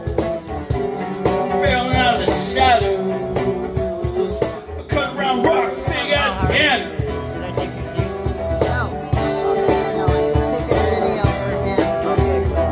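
Live acoustic song: a strummed acoustic guitar over a steady cajon beat, with a voice singing in places.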